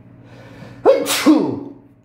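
A man sneezes: a short in-breath, then a sudden loud burst with a falling voiced tail.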